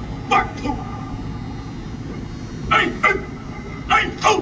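Shouted drill commands given to a line of Marines with rifles: short, sharp two-part calls, one pair near the start and another about 2.7 seconds in, with a third starting at the very end, over the steady noise of a stadium crowd.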